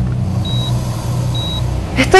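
Operating-room patient monitor beeping, a short high tone about once a second, over a low steady hum.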